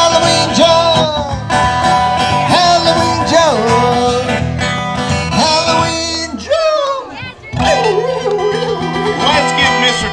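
Live acoustic band playing an upbeat Halloween sing-along song: strummed guitar with voices singing over it. The music thins out briefly about seven seconds in, then carries on.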